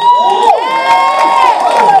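Several congregation members calling out loudly in response, their voices overlapping, each holding a long high note that rises and then falls away.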